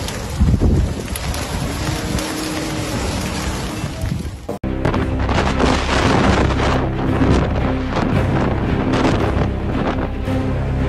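Storm noise with wind buffeting the microphone and a gust about half a second in. After an abrupt cut about four and a half seconds in, louder gusting wind and surf follow, with music underneath.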